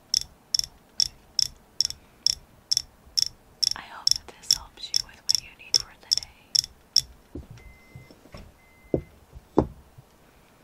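Fingernails tapping a hard, painted egg-shaped object: sharp, even clicks a little over two a second, stopping about seven seconds in. After that come a few faint ticks and two duller, louder knocks near the end.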